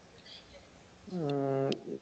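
A man's drawn-out hesitation sound, like 'uhh', about a second in and lasting about half a second, its pitch sliding down and then holding.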